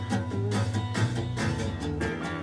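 Live 1970s soul band recording playing a groove: drums striking steadily over a bass line, with guitar.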